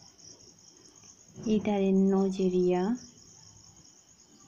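Steady high-pitched chirring of insects in the background, with a woman's voice speaking for about a second and a half in the middle.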